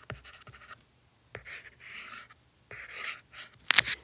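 Stylus writing on a tablet screen: several short scratchy strokes as a word is finished and a box is drawn, with a few sharp taps, the loudest just before the end.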